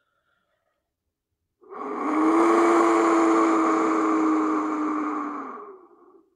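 Aztec wind whistle blown in one long breath of about four and a half seconds, starting about a second and a half in: a loud, breathy, rushing noise over a steady low tone that sags slightly before fading out near the end.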